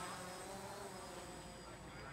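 Faint, steady buzz of a DJI Phantom quadcopter drone's spinning propellers.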